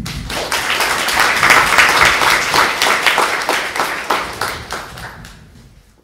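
Audience applauding. It swells over the first couple of seconds and fades out near the end.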